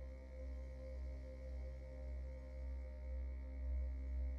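Soft ambient background music: a low steady drone under a few sustained held tones, gently swelling and easing a little more than once a second.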